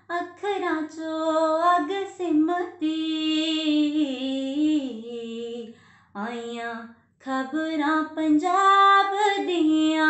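A young woman singing Punjabi folk tappe unaccompanied, in long held notes with gliding ornaments. The phrases stop for two short pauses a little past the middle.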